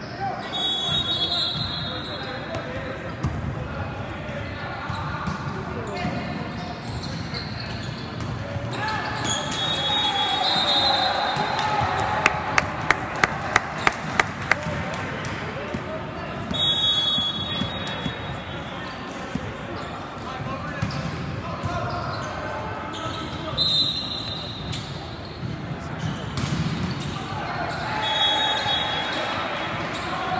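Echoing din of an indoor volleyball hall: many voices, with short high whistles several times. Near the middle comes a quick run of about eight sharp smacks, about three a second, like a ball being bounced on the court floor.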